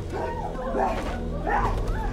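A woman's high, wavering whimpering cries, several short sobs over a steady low hum.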